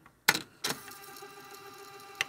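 Short transition sound effect on a section title card: a few sharp clicks, then a held ringing tone, with two more clicks just after it ends.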